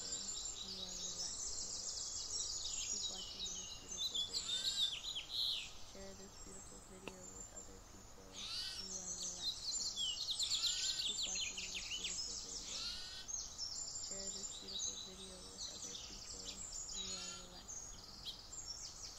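A dense chorus of songbirds singing and chirping: many rapid, high chirps and trills overlapping, which thin out briefly in the middle before building again.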